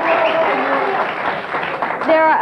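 Studio audience applauding, with voices mixed in; the applause thins out toward the end.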